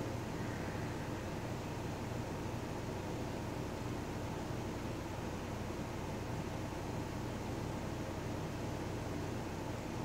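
Steady background hiss with a low hum underneath, unchanging throughout: the recording's room noise.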